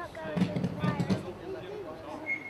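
Underground electricity cable burning, giving a quick cluster of sharp crackles and pops about half a second to a second in, over distant voices.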